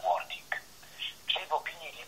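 A person talking over a telephone line, the voice thin with its low and high end cut off.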